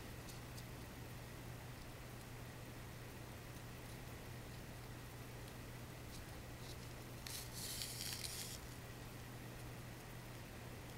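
Quiet hand-sewing of a rolled ric rac flower with needle and thread. Faint handling ticks and a brief rustling hiss of the trim and thread, lasting about a second, come a little over seven seconds in, over a steady low hum.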